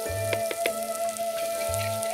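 Onions, chillies and curry leaves sizzling in coconut oil in a clay pot as a spoon stirs them, knocking against the pot twice in the first second. Instrumental background music with a slow bass pulse plays over it.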